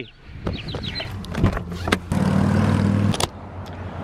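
Motor vehicle sounds: a few sharp clicks, then about a second of steady engine hum that cuts off suddenly.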